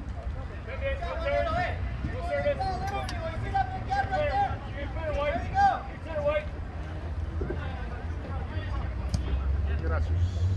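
Indistinct voices talking and calling out, heard from about a second in to past the middle, over a steady low rumble.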